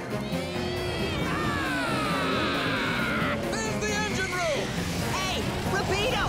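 Cartoon soundtrack: music under a long, falling whistling sound effect, followed about three and a half seconds in by short, squeaky vocal cries without words.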